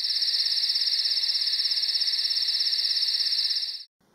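Crickets chirping in a fast, even trill, fading in at the start and fading out just before the end.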